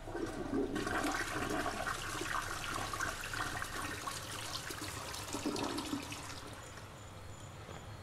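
Toilet flushing: a rush of water that comes in suddenly and dies away after about six seconds.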